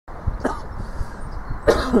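A person coughing twice, a short cough and then a louder one near the end, over a low background rumble.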